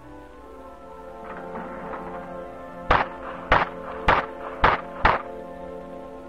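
Five pistol shots fired in quick succession, about half a second apart and starting about three seconds in: a five-round rapid-fire string completed well inside four seconds. Orchestral background music plays under the shots.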